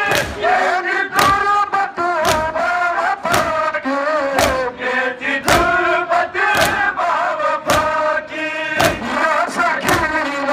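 Mourners chanting a noha in unison, the slap of their chest-beating (matam) landing together about once a second in a steady rhythm.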